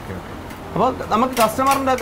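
A person speaking, starting just under a second in, over a steady low hum of background noise.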